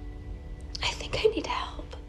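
A few quiet, breathy spoken words about a second in, over soft background music of steady held tones.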